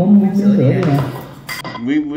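Tableware clattering at a meal: cutlery against dishes, with one sharp clink about one and a half seconds in.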